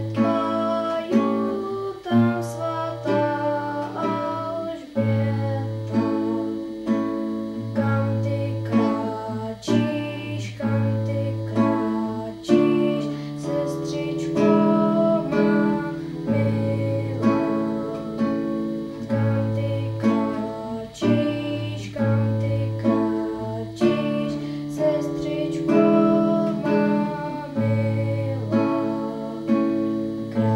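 Solo classical guitar, plucked chords over bass notes at a steady pulse of about two notes a second.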